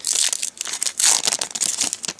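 Shiny foil trading-card pack wrapper crinkling in the hands in several bursts as the pack is opened and the stack of cards is pulled out.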